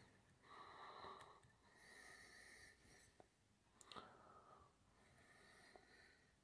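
Near silence: faint, slow breathing close to the microphone, with a couple of faint clicks from small scissors trimming the waste thread at the fly.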